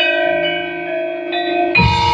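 Javanese gamelan playing: bronze keyed metallophones struck with mallets, their notes ringing on in overlapping tones, with fresh strokes near the start and about two thirds in, and a drum stroke just before the end.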